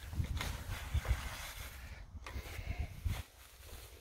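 Tall green crop rustling and swishing under footsteps as someone wades through it, with wind rumbling on the microphone.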